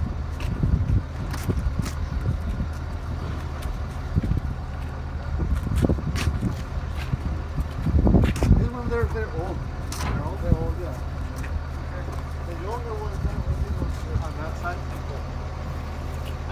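A steady low engine hum runs throughout, with indistinct voices in the distance and scattered knocks and clatter.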